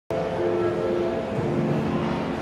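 Shopping-mall ambience: background music of long held chords over a steady general hubbub.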